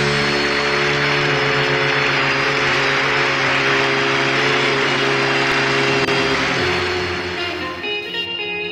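A band's long held final chord under a steady wash of audience applause. Near the end the bass note drops lower and the sound begins to fade.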